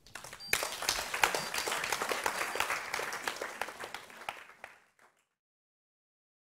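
Audience applauding, a dense patter of many hands clapping that fades out and stops about five seconds in.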